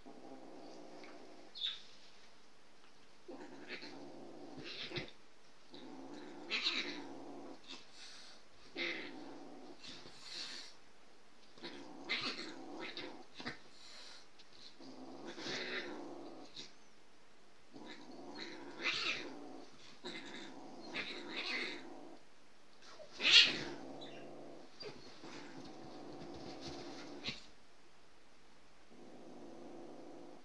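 A cat's angry growling yowl, repeated in drawn-out bouts every two to three seconds with sharper sounds on top, the loudest about three-quarters of the way through.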